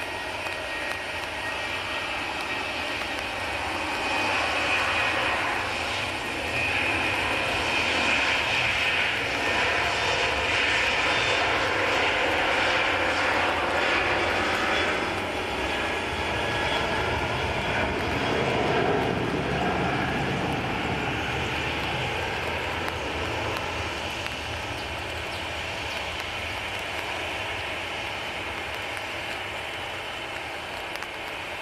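Boeing 737-800's CFM56-7B turbofan engines at takeoff thrust as the airliner rolls down a wet runway: a steady jet roar with a high fan whine. It grows louder about four seconds in, is loudest up to about fifteen seconds, then slowly eases off as the aircraft moves away and lifts off.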